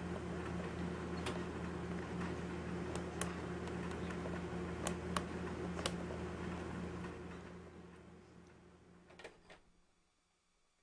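A handful of light, sharp clicks from the plastic parts of a Graco baby walker and its bead toys, over a steady low hum. Everything fades out over the last few seconds.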